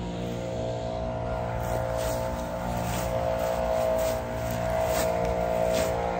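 Zero-turn riding lawn mower engine running steadily, a constant hum.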